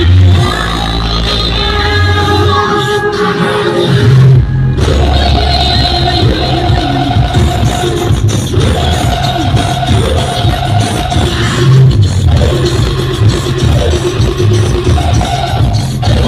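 Loud Indian DJ music with heavy, pulsing bass and a sung melody, played through large outdoor stacked DJ speaker systems. About four seconds in, the music briefly drops out above the bass and leaves a bass hit alone before the song comes back in.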